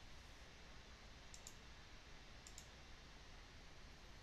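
Near silence broken by two faint double clicks of a computer mouse, about a second apart.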